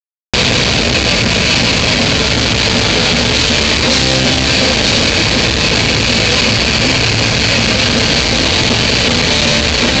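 Heavy metal band playing loud and live, with electric guitars to the fore. The sound cuts in suddenly just after the start.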